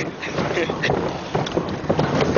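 Wind buffeting the microphone over the running of a pickup truck on a rough dirt road, with irregular knocks and rattles from the truck bed.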